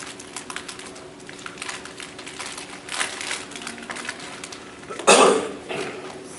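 Scattered light clicks and taps on a laptop's keyboard and trackpad over a faint steady hum, with one short, louder noise about five seconds in.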